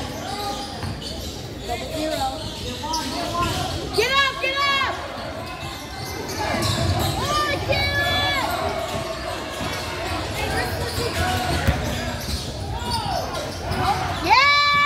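Basketball game on a hardwood gym floor: sneakers squeak sharply on the court about four and eight seconds in, over the ball bouncing and voices calling around the gym.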